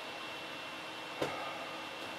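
Quiet room tone between sentences: a steady hiss with a faint, steady high-pitched whine, and a single short click a little past a second in.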